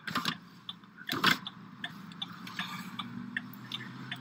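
Light clicks and ticks inside a car cabin: two sharper clicks, one at the start and one about a second in, then scattered faint ticks over a faint low hum.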